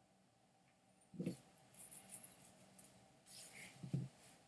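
Faint handling sounds of fly tying: a soft low knock about a second in, then crisp rustling and crinkling as synthetic worm material and thread are wrapped on a hook in the vise, and another soft knock near the end.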